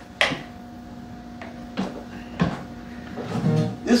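Taylor acoustic guitar being picked up and handled: a sharp knock just after the start, then one open string ringing on for a few seconds under a few lighter knocks from handling.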